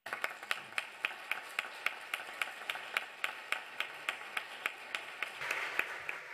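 Audience applauding, with one pair of hands close by clapping sharply and steadily about three times a second over the general applause.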